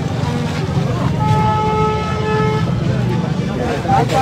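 A vehicle horn honks once, a steady tone held for about a second and a half, starting about a second in, over a constant low street rumble and crowd voices.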